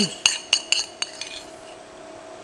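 A spoon clinking several times in quick succession against a clay bowl while scooping ground black pepper, all within about the first second.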